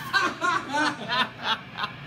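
A man laughing in a run of short bursts, about three a second.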